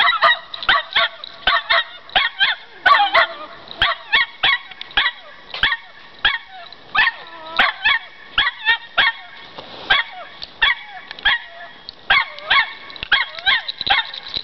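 Cairn terriers barking in a rapid run of short, high yaps, about two or three a second, with only brief gaps: play-fighting barks.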